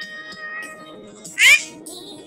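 Faint background music with held notes that fade out, then, about one and a half seconds in, a single short, loud meow-like call with a rising, wavering pitch.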